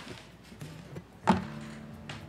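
An acoustic guitar being set down, with a single knock on its body about a second in and its strings ringing on faintly afterwards.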